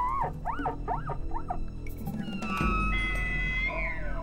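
Elk bugling on a hunter's bugle call: a run of quick rising-and-falling chuckles, then a long high whistle that drops off at the end, over a music bed.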